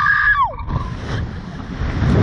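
A child screams, a high shriek that falls in pitch and breaks off about half a second in. Wind rushes and buffets over the microphone of the ride-mounted camera.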